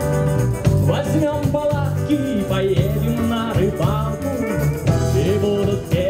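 Live band playing a fast song on drums, guitars, tambourine and accordion, with a steady beat and a sliding melodic line over it.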